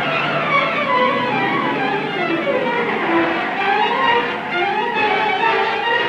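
Orchestral film score, strings carrying a melody that falls over about three seconds and then climbs again.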